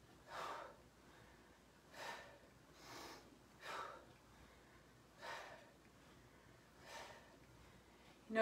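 A woman's faint, sharp exhales as she does Russian twists with a medicine ball, one short puff of breath with each twist, six in all, spaced about one to one and a half seconds apart.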